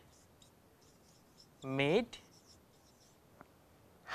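Marker pen writing on a whiteboard in a series of short, faint strokes.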